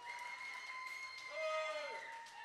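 Steady high-pitched ringing from the stage amplifiers between songs, typical of guitar amp feedback. A louder held, pitched note or call comes in about 1.4 seconds in and drops away near the end.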